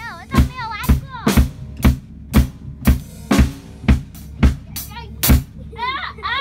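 A child playing an acoustic drum kit with sticks: a steady, even beat of about two strikes a second.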